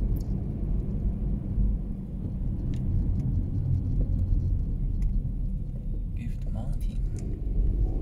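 Steady low rumble of road and engine noise heard inside a moving car's cabin, with a few faint clicks.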